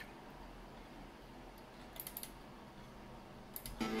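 Faint steady room hum with a few light clicks about two seconds in. Just before the end, a tracker song starts playing from the Amiga 3000 clone's sound output, showing that its audio works.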